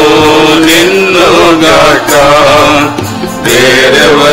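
Men singing a Telugu Christian worship song together, holding long notes, with a short break in the singing about three seconds in.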